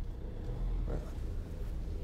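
Land Rover Defender 90's 2.2-litre four-cylinder diesel engine idling steadily, a low rumble heard from inside the cabin while the vehicle stands still.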